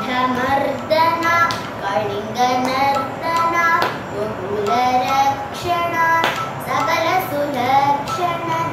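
A young girl singing a Hindu devotional song solo, her voice rising and falling through melodic phrases with short breaths between them.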